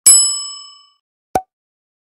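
Notification-bell 'ding' sound effect: one bright metallic strike that rings out and fades over most of a second, followed about a second later by a short pop.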